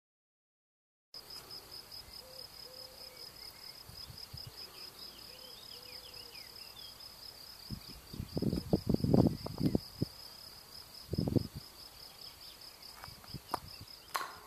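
Insects in a meadow chirping in a steady, rapid, high-pitched pulsing trill, with faint bird calls behind. A few loud low rumbles break in around the middle and once more shortly after.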